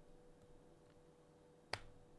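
Near silence: room tone with a faint steady hum, and one sharp click near the end.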